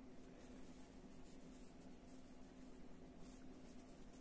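Near silence: faint scratchy rustling of cotton yarn drawn through stitches by a metal crochet hook, over a steady low hum.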